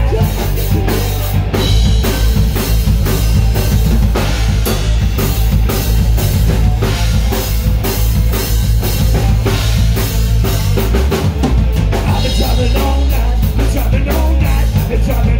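Rock band playing live: a drum kit with bass drum and snare, bass guitar and electric guitar, playing steadily together.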